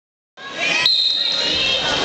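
Gymnasium crowd chatter cuts in a moment after the start. About a second in, a steady high whistle tone sounds for about a second: the referee's whistle starting the wrestling bout.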